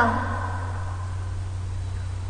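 A steady low hum of background noise, with a child's last word trailing off just at the start.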